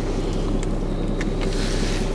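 Steady low hum of a car idling, heard inside the cabin, with a few faint gulps and plastic-bottle clicks.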